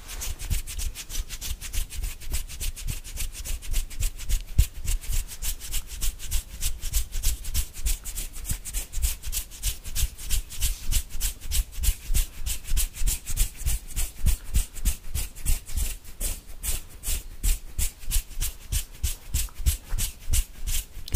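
Fast, rhythmic hand sounds right at a condenser microphone: fingertips rubbing and brushing close to the grille, about five strokes a second, each with a light low thump.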